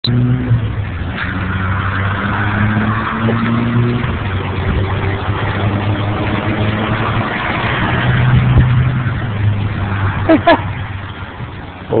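A steady engine hum whose pitch shifts slightly, like a motor vehicle running, with a person's short laugh near the end.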